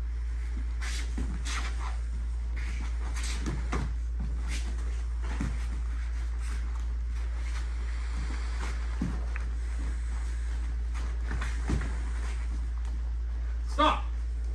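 Taekwondo point sparring in padded gear: scattered soft thuds and taps of feet moving on foam mats and padded gloves and kicks landing, over a steady low hum. A brief loud shout comes near the end.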